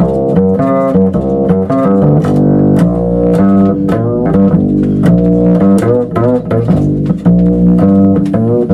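Upright double bass played pizzicato: a quick, unbroken run of plucked notes, each starting with a sharp attack.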